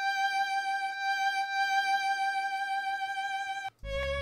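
Sampled violin patch in Logic Pro holding one long high note that cuts off abruptly just before the end, when a lower string note comes in over a bass line.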